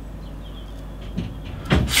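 Quiet pause with a low steady background hum, then a man starts speaking near the end.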